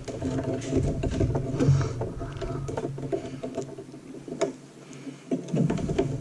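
Light clicks and rattles of SAS data cables and their connectors being handled and pushed into a RAID controller inside an open server chassis, with one sharper click about four seconds in, over a steady low hum.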